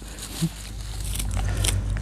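Dry, crispy Heuchera (coral bells) leaves crackling and rustling as they are pulled away by hand from the plant's crown, over a steady low rumble.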